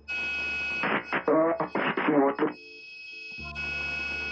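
Aircraft radio cutting in with a sudden steady hiss, then a brief radio voice for about two seconds, heard over the headset audio, with the hiss dropping out and coming back near the end.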